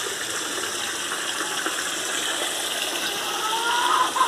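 Steady rush of running water in a backyard aquaponics system, with a faint rising whistle near the end.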